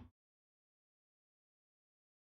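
Near silence: the recording is gated to digital silence, with only the very end of the preceding word in the first instant.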